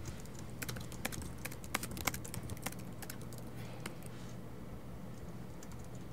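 Laptop keyboard being typed on: a quick, uneven run of key clicks in the first half, then only a stray keystroke or two over a low steady hum.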